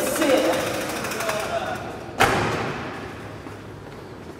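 A single sharp thump against the taxi's metal body about two seconds in, ringing out briefly, after a couple of seconds of voices and a fast rattling.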